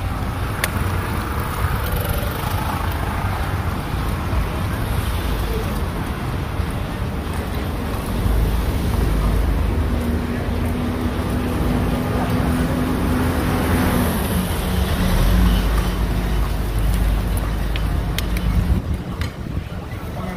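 Street traffic heard from an open horse-drawn carriage: steady road noise over a low rumble, with a steady hum standing out from about halfway through.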